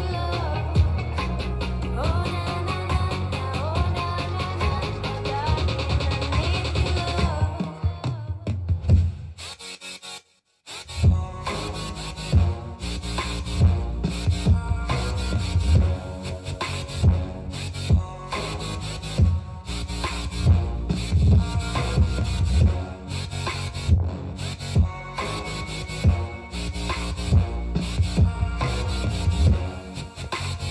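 Music played through a stereo pair of Bang & Olufsen P6 portable Bluetooth speakers. A song fades out about eight seconds in; after a brief silence, another track starts with a strong, regular bass beat.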